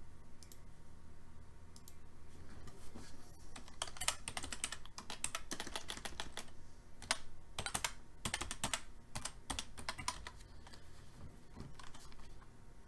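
Typing on a computer keyboard: a couple of single key clicks, then quick runs of keystrokes in bursts with a brief pause midway, stopping near the end.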